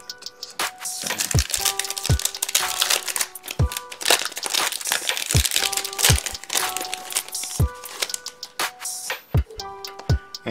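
Crinkling and tearing of a plastic baseball card pack wrapper (2022 Topps Series 1) being ripped open by hand, over background music with a steady beat.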